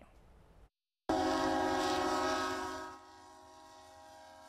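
Freight locomotive horn sounding at a road grade crossing, the warning that crossing quiet zones are meant to remove. A loud chord of several steady tones starts about a second in and fades away near the end.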